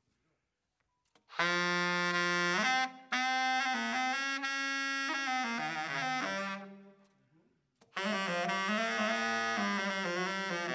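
Unaccompanied saxophone solo. It opens about a second in with a held note, then plays phrases that step up and down. There is a brief break about three seconds in and a longer pause around the seventh second, then a busier run of notes.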